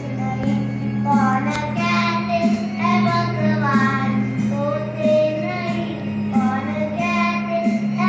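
A boy singing a melody solo, accompanied on a Yamaha electronic keyboard that holds sustained low chord notes beneath his voice.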